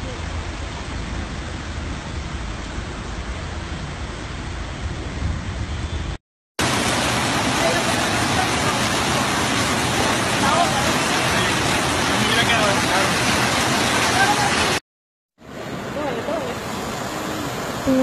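Steady noise of heavy rain and fast-flowing floodwater recorded on phones, in three short clips with a brief dropout between each. The middle clip is the loudest.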